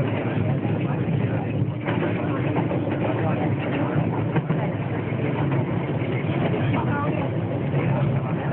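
Rajdhani Express passenger coach running at speed, heard from inside: a steady low rumble of wheels on the rails with constant rattling and clicking.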